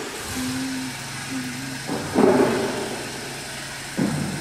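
A low steady hum, with two short steady tones in the first two seconds, then a sudden thud about two seconds in that rings on in a large echoing hall.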